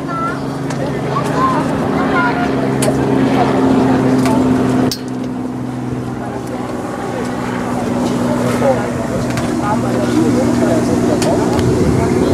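A steady low mechanical hum, like a running motor or engine, with indistinct distant voices over it. The lowest part of the hum drops out about five seconds in.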